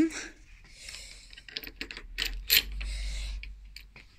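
Small clicks and taps of metal parts as the handlebar riser mount and its washers are fitted back in, with a stretch of rustling in the middle.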